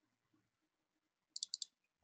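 Three quick computer mouse clicks about a second and a half in, otherwise near silence.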